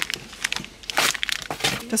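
Plastic packet of glass noodles crinkling in a hand as it is picked up and handled, in a few short rustles.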